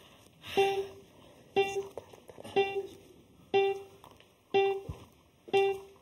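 Countdown timer cue: a short plucked-string note repeated once a second, six times, ticking off the seconds left in a timed round.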